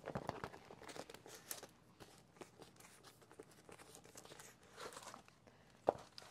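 Diamond painting canvas with its plastic cover film being unrolled and laid flat: faint crinkling and rustling of the film, busiest in the first couple of seconds. One sharp tap or snap just before the end.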